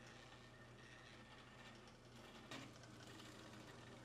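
Near silence: faint steady low hum of room tone, with one faint click about two and a half seconds in.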